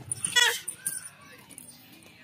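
One short, high, wavering bleat-like call about half a second in, followed by faint, quieter sounds.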